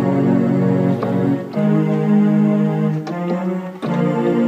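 Portable electronic keyboard playing sustained chords on a synthesizer voice, changing chord three times.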